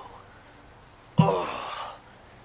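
A man's voiced sigh, a long breath out with voice, coming suddenly about a second in and falling in pitch as it fades, from a person sitting in ice water.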